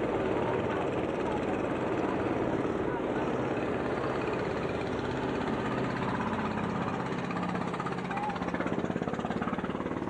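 A boat engine running steadily with an even low drone, heard from on board while the boat moves along.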